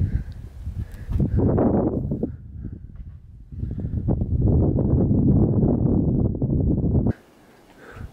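Low rumbling noise on the camera's own microphone, with a dip in the middle, cutting off suddenly about seven seconds in.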